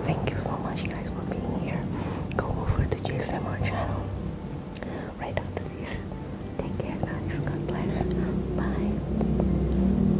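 A woman whispering softly, with quiet background music growing louder in the second half.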